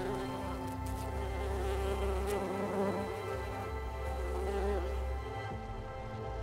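A flying insect buzzing, its pitch wavering up and down, over soft background music; the buzzing fades out about five seconds in.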